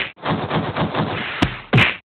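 Cartoon fight sound effects: a dense stretch of scuffling noise, then a sharp crack about a second and a half in and a heavy whack just before the end.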